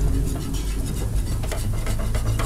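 A wire whisk stirring and scraping a thick milky mixture in a metal frying pan, with small irregular clicks over a low steady hum.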